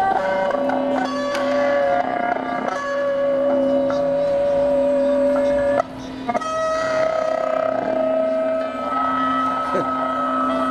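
Electric guitars in a large ensemble holding long sustained notes, several pitches sounding together, stepping to new pitches every few seconds. The sound dips briefly about six seconds in.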